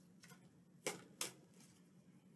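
Faint handling sounds of a tarot card deck being shuffled in the hands: two short card clicks about a second in, a third of a second apart.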